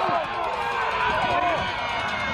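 Many voices from players and spectators shouting and calling over one another during a football play, a continuous jumble with no single voice standing out.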